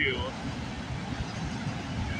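CN freight train rolling past: steady rumble and wheel noise of the cars going by.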